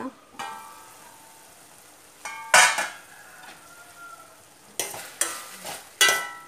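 A stainless steel lid is lifted off a pan with a brief metallic ring. Onions and tomatoes then sizzle in the steel pan while a steel ladle scrapes and stirs them, with the loudest strokes about halfway through and again near the end.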